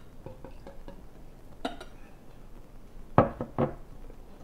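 Beer poured from a glass bottle into a drinking glass, faint splashing and clinking, then two sharp knocks of glass on a glass tabletop about three seconds in as the bottle is set down; the knocks are the loudest sounds.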